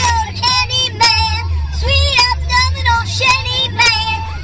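A man's voice pitched very high, in a wavering sing-song or singing delivery, over the steady low rumble of a car cabin.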